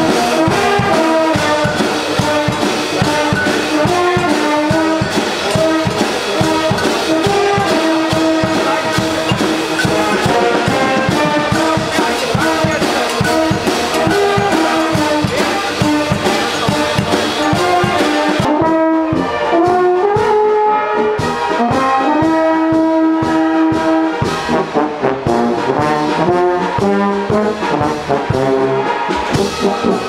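Brass band with tubas, horns and trombones playing a piece with a steady, regular beat. The sound turns less bright about two-thirds of the way in.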